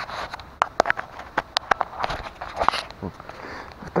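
Footsteps through wet leaf litter and brush, with twigs snapping: a run of irregular sharp clicks and cracks and light rustling.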